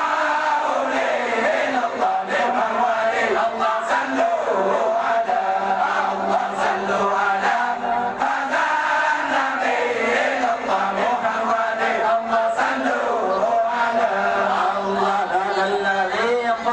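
A large group of men chanting meulike, the Acehnese maulid zikir, together in one continuous chant whose melody bends up and down, at a steady level throughout.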